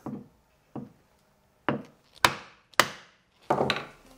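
Wooden mallet striking the end of a turned wooden tool handle, driving it onto the tang of a thread chaser held in a vise, with no glue. About six sharp knocks, two light ones first and then heavier blows, the loudest two in the middle, each dying away quickly.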